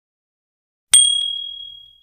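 A single bell ding from a subscribe-animation sound effect, struck about a second in and ringing out with a clear high tone that fades over about a second.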